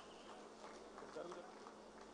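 Near silence with a faint crowd murmur and distant voices.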